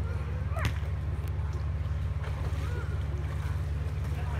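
A steady low rumble with the faint, distant voices of people chatting in a backyard swimming pool. A brief sound rising sharply in pitch comes about half a second in.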